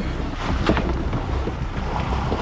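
Seawater sloshing and churning against the side of an inflatable boat and the fort's steel legs, with wind buffeting the microphone as a steady rumble.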